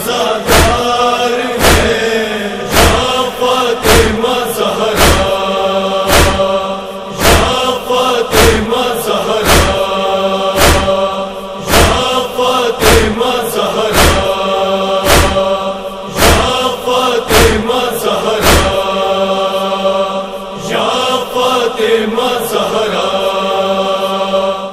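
Nauha backing after the recitation: a wordless chorus holding a lamenting chant over a steady beat of matam (chest-beating) thumps. The thumps stop a few seconds before the end while the chorus holds on.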